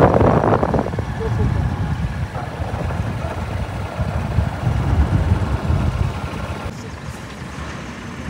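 Low, fluttering rumble of a moving vehicle, with wind buffeting the microphone, loudest in the first second.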